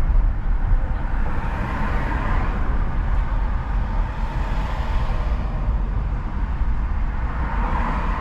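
A car driving on a city street: a steady low rumble of road and engine noise, with the tyre hiss swelling a few times.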